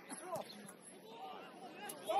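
Faint, distant voices of football players and touchline spectators calling out, a few short shouts over the open-air background.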